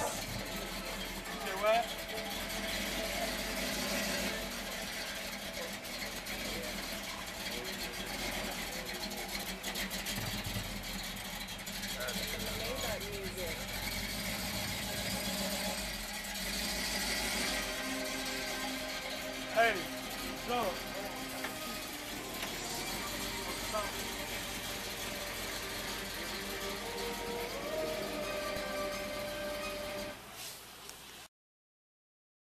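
Music with vocals, over the steady low running of an early-1970s Chevrolet Impala convertible's engine at idle.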